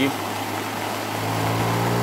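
Floodwater rushing in a swollen, muddy river: a steady hiss. A vehicle engine hum comes in underneath and grows louder toward the end.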